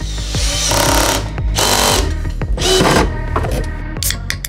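Makita cordless drill driving a screw in three short whining bursts about a second apart, with background music underneath.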